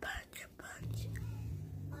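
A girl's breathy, whispered speech, slurred by a straw stuck to her tongue. A steady low hum comes in a little under a second in.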